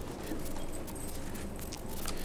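Quiet hall room tone with a few light footsteps and faint knocks.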